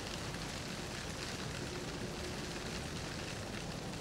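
A steady, even hiss with no distinct events: the recording's background noise between spoken lines.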